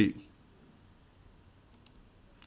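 A few faint computer mouse clicks in the second half, otherwise near silence.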